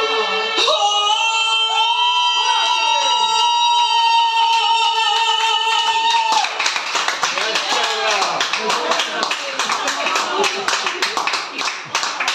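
A song ends on one long held note over its accompaniment, which stops about six seconds in. Clapping follows, with voices calling out over it.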